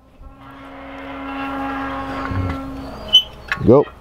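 Steel-pipe cattle sweep gate swinging, its metal rubbing at the pivot and giving one long, steady squeal that swells and fades over about three seconds. A short metal clink follows near the end.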